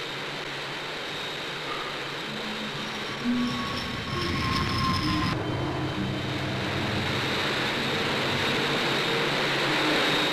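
The de Havilland Ghost turbojets of a de Havilland Comet 1 airliner running on the ground while warming up for take-off: a steady jet roar that grows louder, with a thin whine that falls slightly about four to five seconds in. The sound changes abruptly a little after five seconds in.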